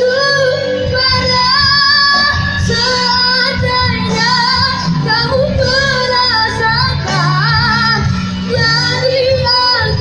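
A child singing a held, ornamented ballad line with vibrato and pitch runs, over instrumental accompaniment.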